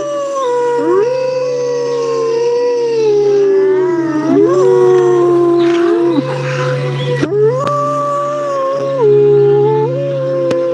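Wolves howling: long pitched howls that rise, hold and slide down, overlapping one another, over a steady low hum.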